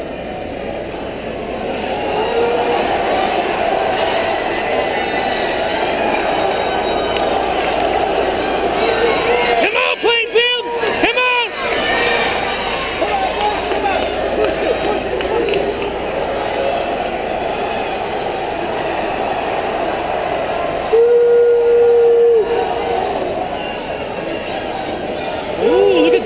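Crowd of spectators cheering and shouting in a gymnasium during a relay race, with a reverberant hubbub throughout. A cluster of rising-and-falling yells comes about ten seconds in, and one loud held tone lasting about a second and a half sounds a little after twenty seconds.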